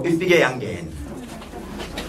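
A man speaking into a handheld microphone: a short burst of speech at the start, then a quieter stretch of low voice sounds.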